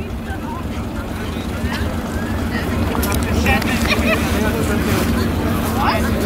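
A farm machine's engine running steadily and growing louder, with people's voices and short chirps over it.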